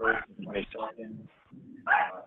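Indistinct speech: short bursts of talking with a brief pause about one and a half seconds in.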